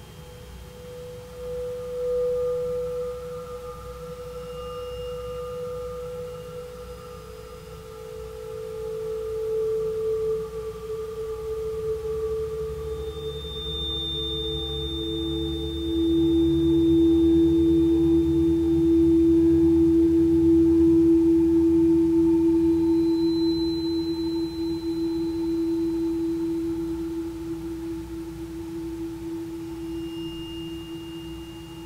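Crystal singing bowls ringing with long, steady, pure tones at several pitches that overlap and hand over to one another: a higher tone near the start, lower ones joining, and the lowest and loudest swelling in about halfway through. A low hum lies underneath, and thin high tones sound briefly twice.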